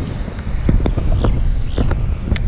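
Wind buffeting a camera microphone on a moving road bike: a loud low rumble, with a few sharp clicks and knocks scattered through it.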